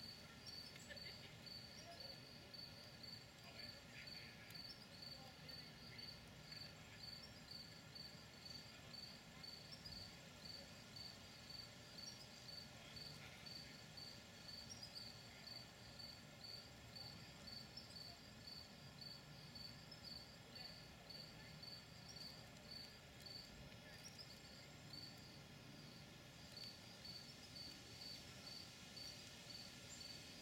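Faint, regular chirping of a cricket, about three short high chirps a second, with a brief pause a few seconds before the end.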